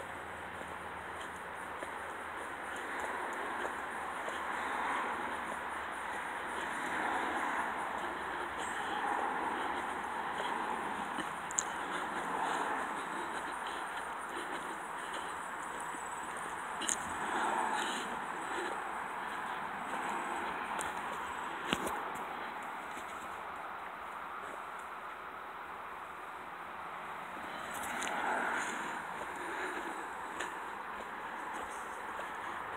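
Outdoor walking noise picked up by a handheld camera: a steady rustle of wind and handling noise that swells every few seconds, with a few sharp clicks.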